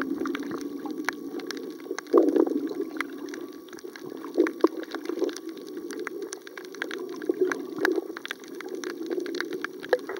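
Underwater sound heard through a waterproof compact camera's microphone: a muffled, steady water rush that swells about two seconds in and again about halfway, with scattered sharp clicks and crackles throughout.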